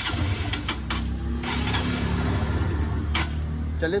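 Honda CB Shine 125's single-cylinder four-stroke engine idling steadily through its silencer with the choke off, not long after a cold start. A few light clicks sound over the idle.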